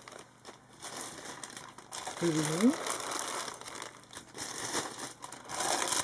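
Plastic zip-lock bags full of faceted crystal bead necklaces crinkling as a hand presses and handles them.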